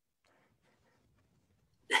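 Near silence: a pause in a man's speech over a video call, with faint room noise, then his voice starting again near the end.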